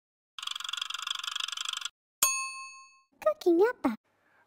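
Edited-in sound effects: a rattling hiss lasting about a second and a half, then a single bright ding that rings out for most of a second. A voice speaks briefly near the end.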